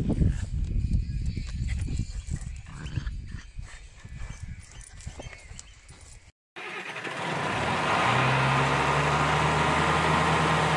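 Wind buffeting the microphone, with rustles and small knocks. After a sudden break, a steady engine hum starts, swells about a second later and then holds at an even pitch, like an engine idling.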